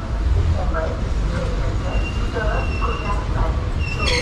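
Steady low rumble in a passenger train coach, with people talking in the background. A thin steady high tone comes in about halfway through.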